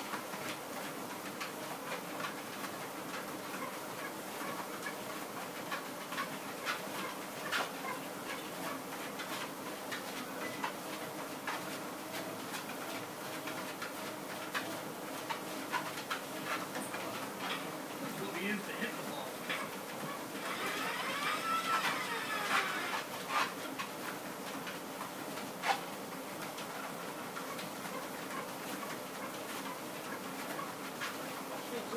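Treadmill motor and belt running steadily under the footsteps of a person and a large dog walking together, with many short clicks and taps from their steps. About two-thirds of the way in comes a short stretch of brighter, higher sounds that glide in pitch.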